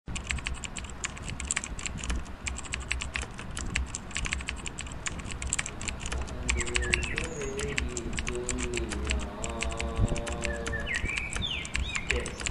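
Computer keyboard typing: a fast, continuous run of keystroke clicks as lines of code are entered.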